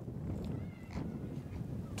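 Faint outdoor background noise with a low rumble, and a faint short high-pitched call a little after half a second in.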